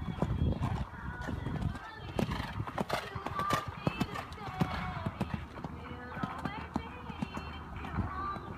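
Hoofbeats of a ridden horse cantering on a sand arena, a run of uneven thuds.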